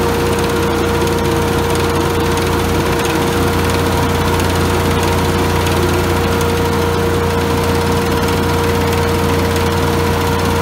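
Hovercraft engine and fan running steadily at a constant speed while the craft moves up onto its trailer, a loud unbroken drone with a steady hum.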